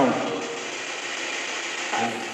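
Spirit box sweeping through radio frequencies, giving a steady hiss of static.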